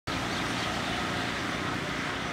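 Steady outdoor background noise, an even hiss and rumble with no distinct events.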